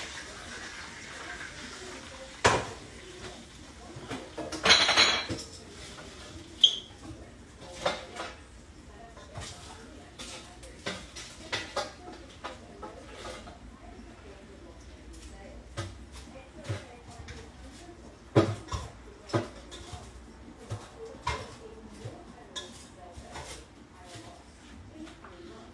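Plates and cutlery clinking and knocking as food is served up from the air fryer: scattered sharp clacks throughout, a loud knock about two and a half seconds in and a brief scrape about five seconds in.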